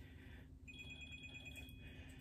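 A phone ringing faintly with an incoming call: a rapidly pulsing electronic ringtone of two high tones that starts under a second in and fades out near the end.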